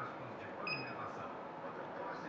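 One short, high electronic beep about two-thirds of a second in, the Multilaser Style head unit's touchscreen confirming a tap, over quiet room tone.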